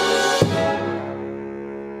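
Jazz big band playing, with a featured baritone saxophone: a full band chord, a sharp drum hit with mallets about half a second in, then the brighter sound dies away and a sustained low chord is held.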